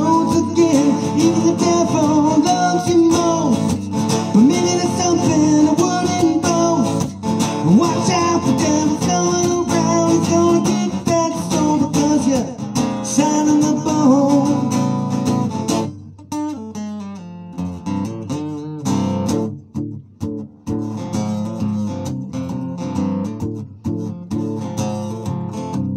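Solo acoustic guitar playing an instrumental break in a live song: full and dense, with bent notes, for the first two-thirds, then dropping to quieter, sparser strumming with short gaps.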